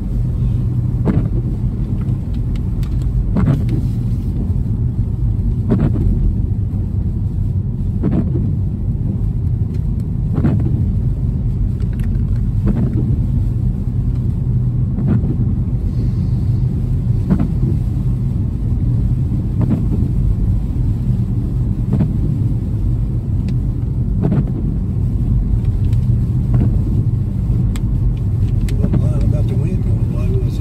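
Steady low rumble of a car's tyres and engine on a wet road, heard inside the cabin, with the windshield wipers sweeping the glass about every two seconds.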